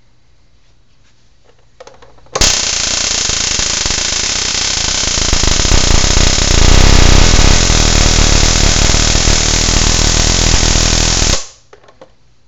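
Magnetic quench spark gap, fed by a flyback transformer with a 104 pF capacitor across its secondary, firing as a fast, rasping train of capacitor discharges. It starts suddenly about two and a half seconds in, grows louder about halfway through, and cuts off abruptly near the end.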